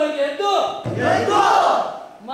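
Several men's voices chant a short phrase in unison, then break into a loud group shout about a second in, lasting about a second.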